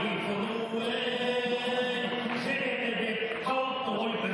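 An akyn singing improvised aitys verse in a chanting style, holding long notes, to dombra accompaniment.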